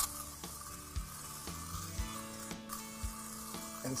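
Aerosol can of Pledge furniture polish spraying onto a tire: a steady hiss, with a few soft knocks, over background music.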